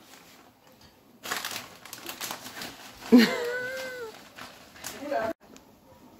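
Rustling and shuffling, then about three seconds in a sudden drawn-out voice-like call that rises and falls over about a second, the loudest sound here; a short voiced sound follows near the end.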